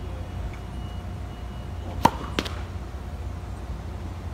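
A tennis ball struck by a racket and bouncing on a hard court: two sharp pops about a third of a second apart, about two seconds in, the first the louder with a brief ring.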